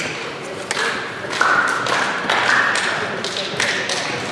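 Echoing sports-hall sound of players' indistinct voices, with a run of short thuds and taps every half second or so and a few brief high tones.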